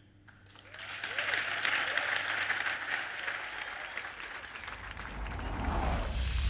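Audience applauding, starting about a second in after the talk ends. A deep rumble comes in near the end.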